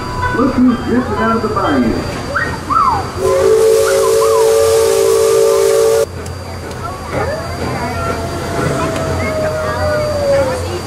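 Riverboat steam whistle blowing one steady blast of about three seconds, several tones sounding together over a hiss of steam, starting a few seconds in and cutting off sharply.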